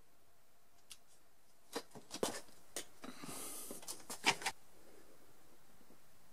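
A series of sharp clicks and light taps from handling a small hot glue gun and a plastic dent-puller tab being pressed onto a car body panel, with a short rustle in the middle.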